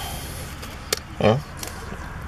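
A man's short murmur with food in his mouth, just after a single sharp click, over a steady low hum.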